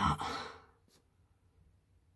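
A person's short, breathy sigh, then near silence broken by one faint click about a second in.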